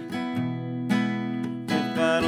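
Acoustic guitar strummed, about three chords roughly a second apart, each left to ring.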